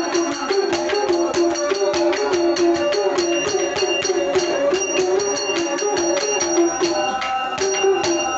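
A villu pattu ensemble playing without words: a fast, steady beat of sharp strokes with bells jingling, over a wavering melody line.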